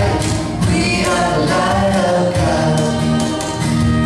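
Live acoustic band music: acoustic guitars strummed in a steady rhythm under a man and a woman singing together.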